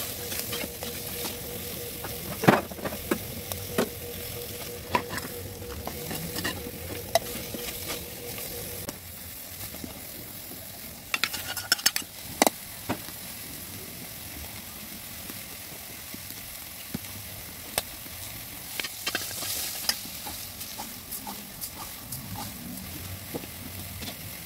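Meat frying and sizzling in an aluminium pot on a wood-fired stove while a metal spoon stirs it, with sharp clinks of the spoon against the pot, a quick cluster of them about halfway through.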